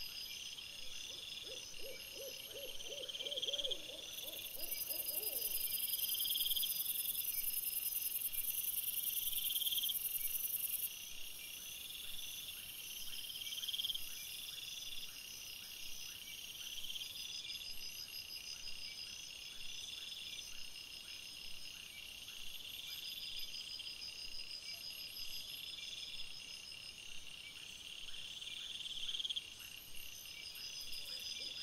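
Night chorus of crickets, a steady high chirping in a regular pulsing rhythm. From about four to eleven seconds in, a louder high hiss sits on top of it. About a second in, a lower, rapidly pulsing animal call lasts for several seconds.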